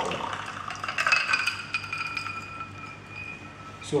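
Glass laboratory beaker clinking about a second in, followed by a clear ringing tone that fades away over about two seconds.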